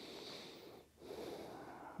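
A person's faint, audible breathing: two long breaths with a brief pause just before a second in.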